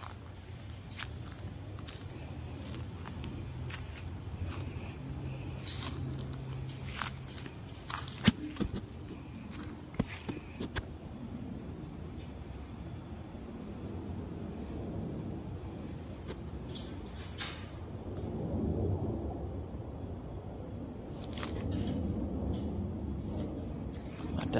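Outdoor ambience picked up by a phone's microphone: a steady low rumble with scattered faint clicks and knocks, the sharpest about eight seconds in, and the rumble swelling a little toward the end.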